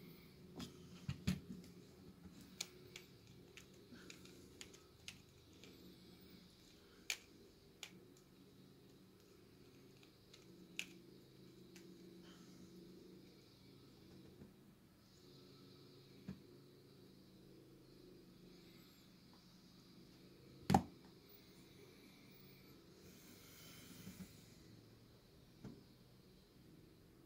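Faint, scattered plastic clicks of a pyraminx puzzle being turned by hand while it is scrambled, over a low steady hum, with one sharper click about three-quarters of the way through.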